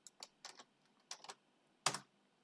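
Computer keyboard typing in short bursts of keystrokes, with the loudest pair of keystrokes near the end.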